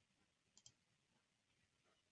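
Near silence, broken about half a second in by two faint, quick computer mouse clicks, a split second apart.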